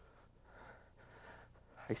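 A man's faint, breathy breaths, two soft drawn breaths about half a second and a second in, over a low steady hum, before he starts speaking near the end.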